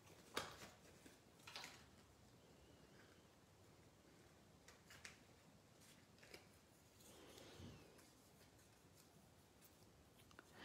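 Near silence with a few faint, brief rustles and taps of small cardstock pieces being handled and placed on a card.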